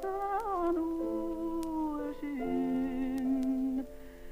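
A woman singing a slow Irish-language air, holding long notes with a small rise and fall near the start and a step down in pitch about two seconds in.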